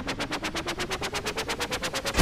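Electronic logo-intro sound effect: a rapid stutter of about ten pulses a second, its pitch stepping steadily upward as it builds.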